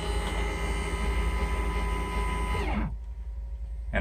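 14-inch electric linear actuator motor whining steadily as it drives the sliding chicken door closed. A little under three seconds in, its pitch drops and it cuts off as the actuator reaches the end of its travel, where its limit switch stops it.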